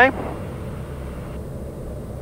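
Steady, low cabin drone of the TBM 910's single turboprop engine and propeller in level flight at reduced power, heard inside the cockpit.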